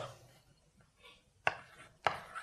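Chalk writing on a blackboard: a sharp tap of the chalk against the board about one and a half seconds in, with little else.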